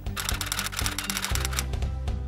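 Background music with a fast run of typewriter-like clicks for about a second and a half, a typing sound effect for an on-screen caption; the bass notes step lower and louder partway through.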